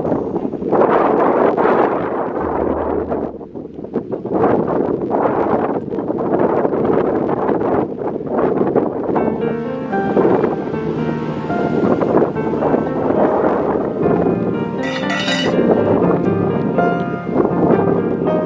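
Wind buffeting the microphone in uneven gusts. About halfway through, background music comes in and carries on over the wind.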